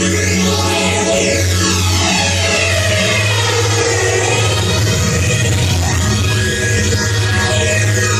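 Loud hardstyle electronic dance music from a DJ set: a held heavy bass under synth lines that sweep down in pitch and then back up, bottoming out around the middle.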